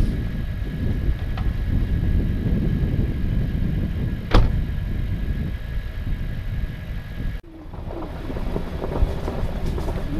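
Chevrolet Silverado pickup's engine idling as a steady low rumble picked up by a hood-mounted camera, with one sharp knock about four seconds in. Near the end, after a sudden break, the truck is driving over a rough dirt trail.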